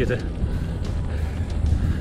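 Steady low wind rumble on the microphone of a camera riding along on a moving bicycle.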